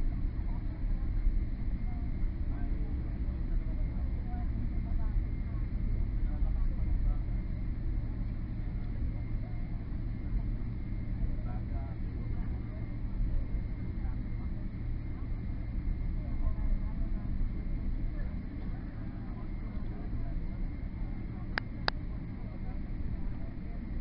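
Cabin noise of a Boeing 777 rolling along the runway after touchdown: a steady low rumble of engines and wheels that eases slightly as the airliner slows. Two sharp clicks come near the end.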